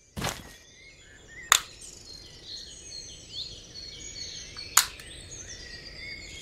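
Jungle ambience sound effect: many birds chirping and calling over a faint background hiss, cut by three sharp cracks: one just after the start, one about a second and a half in, and one near the end.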